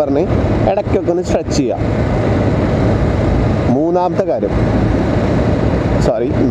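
Steady wind rush on the microphone over the low drone of a TVS Apache RR 310's single-cylinder engine at riding speed. Snatches of the rider's voice come through in the first couple of seconds and again briefly in the middle.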